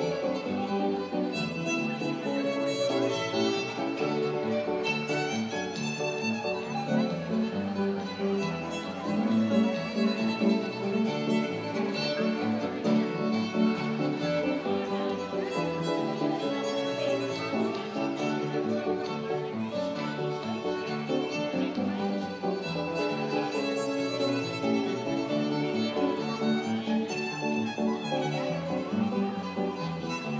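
Live instrumental tune played continuously, with a lead melody over piano accompaniment.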